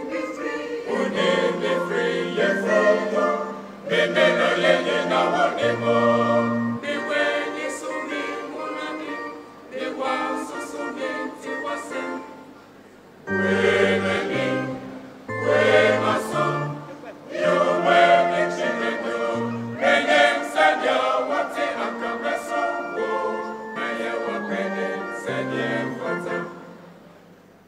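Church choir singing a gospel song in harmony, with low held bass notes moving in steps beneath the voices. The singing comes in phrases with brief dips between them.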